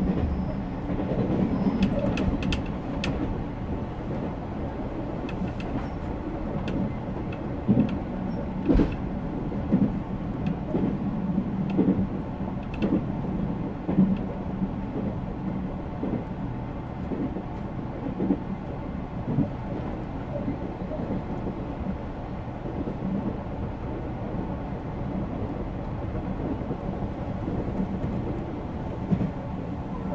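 JR Central Series 383 tilting electric multiple unit running at speed, heard from inside the leading car: a steady low rumble of wheels on rail. A few sharper knocks from the track stand out between about eight and fourteen seconds in.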